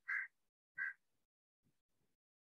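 Two short, harsh bird calls about two-thirds of a second apart.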